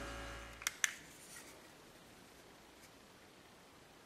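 Two short sharp clicks in quick succession under a second in, as a low hum fades away; then near silence.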